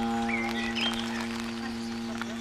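Wind band holding one long sustained chord that slowly gets quieter.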